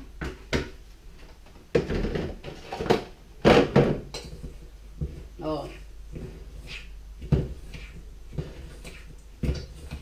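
A container is knocked and shaken against a stainless steel bowl to empty out a dry ground powder of coffee grounds, charcoal and eggshell. A spoon then clinks and scrapes in the metal bowl as the gritty mix is stirred, with a few sharp clicks against the bowl.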